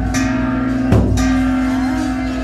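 A traditional Vietnamese ceremonial drum and gong struck once about a second in, with steady ringing tones held beneath.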